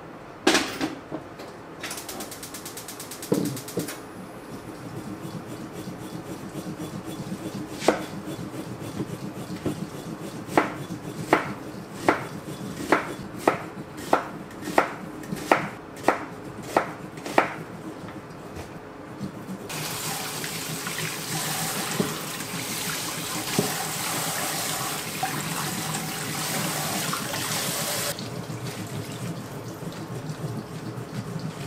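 A kitchen knife chopping a vegetable on a wooden cutting board, about eleven even strokes roughly one and a half a second apart. After that a tap runs into a stainless-steel sink for about eight seconds. A sharp clack of kitchenware comes near the start.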